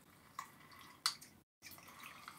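Faint squelch and drip of lime juice being squeezed through a hand-held citrus press into a metal cocktail shaker tin, with two small clicks about half a second and a second in. The sound cuts out completely for a moment near the middle.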